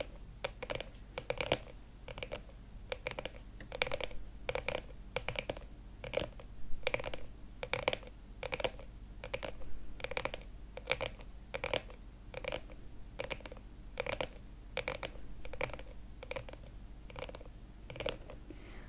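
Long acrylic fingernails tapping on a hard black sunglasses case: light, crisp clicks at about two to three a second, in an uneven pattern.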